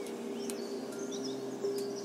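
Meditation background soundscape: a steady low sustained drone with scattered short, bird-like chirps above it.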